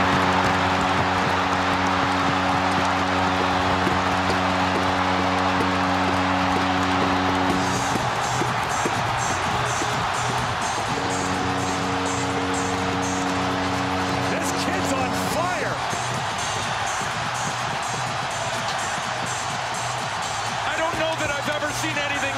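San Jose Sharks home-arena goal horn sounding in two long blasts over a roaring arena crowd. The first blast ends about eight seconds in, and the second runs from about eleven to fifteen seconds. The crowd keeps cheering throughout.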